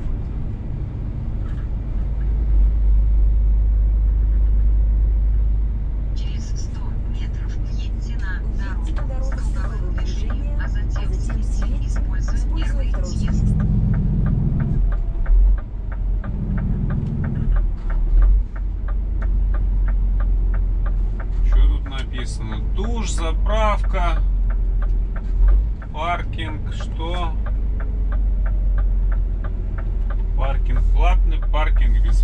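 Scania S500 truck's engine running with a steady low drone heard inside the cab as the truck drives slowly.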